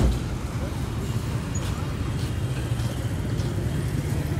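Steady low hum of vehicle engines and road traffic, with faint voices in the background and a brief low thump at the very start.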